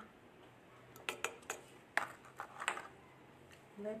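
A run of about seven light, sharp clicks and clinks over a couple of seconds: a metal spoon knocking against a ceramic bowl as baking soda is spooned into it.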